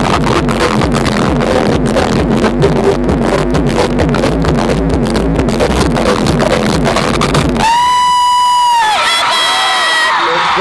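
Loud live pop music with a steady beat over the concert PA, with crowd cheering mixed in. About eight seconds in the music stops and one high voice holds a long note for about a second, then crowd voices follow.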